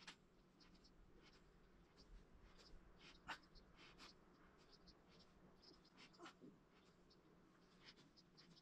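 Very faint, irregular scratching and light ticks of fingers rubbing and pressing modelling clay on a sculpted forehead.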